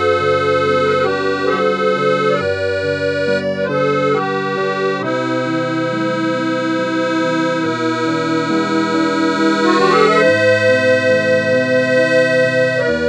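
Instrumental music with no singing: long held notes and chords that change every second or two. A regular wavering swell in loudness comes in near the end.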